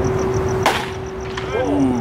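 A single sharp crack of a pitched baseball striking at home plate, about two-thirds of a second in.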